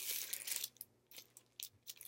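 A mailing envelope crinkling and rustling in the hands as it is handled and opened, in a string of short, scratchy bursts.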